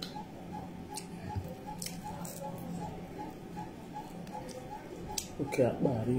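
Close-up chewing and lip smacking of a person eating pounded yam and soup by hand, with a few sharp mouth clicks. Under it runs a faint, regular ticking about two and a half times a second, and a short voiced hum comes near the end.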